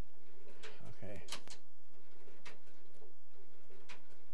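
Slide projector mechanism clicking as slides are changed: several sharp clicks, spread irregularly over a steady tape hiss. A short, low voiced murmur comes about a second in.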